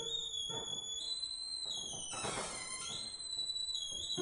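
Cello played very high and thin, a whistle-like tone that steps up in pitch about a second in, with a scratchy, noisy bow passage about two seconds in.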